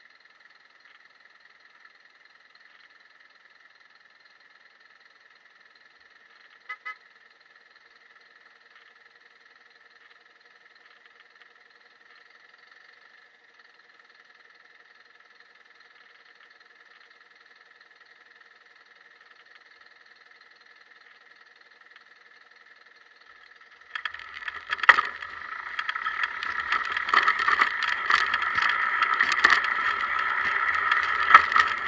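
A faint steady whine, broken by two quick clicks about seven seconds in. About six seconds before the end it gives way to loud wind rush and road rattle, with knocks, from a camera on a moving bicycle.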